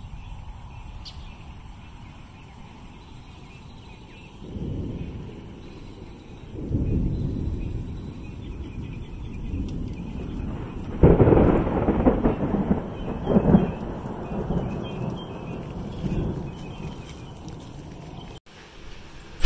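Thunder from a severe thunderstorm: low rumbles about four and a half and seven seconds in, then a sudden loud peal about eleven seconds in that rolls on in several surges for about six seconds.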